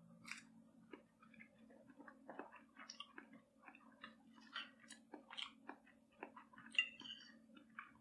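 Faint chewing of a mouthful of omelette, with scattered light clicks and scrapes of a metal fork cutting on a plate, over a low steady hum.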